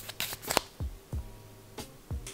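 A foil face-mask sachet crinkling as it is handled and waved about, with a few sharp crackles in the first half second, then quieter.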